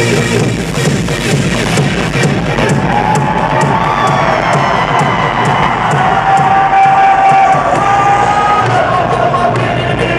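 Loud electronic rap-rave music with a heavy, steady bass beat played live through a concert PA, with the crowd cheering over it.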